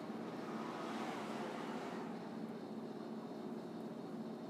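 Steady low hum of room background noise, with a broad swell of rushing noise starting about half a second in and fading by about two seconds in.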